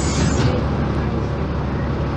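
Tatsa Puma D12F bus's front-mounted six-cylinder Deutz diesel engine idling steadily at a standstill, with a hiss dying away about half a second in.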